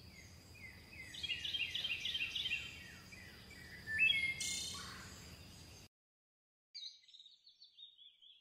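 Birdsong: a bird singing a quick run of repeated, downward-sliding high notes, then a louder call about four seconds in, over a low steady background rumble. The sound cuts off suddenly just before six seconds, and a few faint chirps follow near the end.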